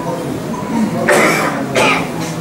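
A person coughing twice, the first cough about a second in and a shorter one just after it.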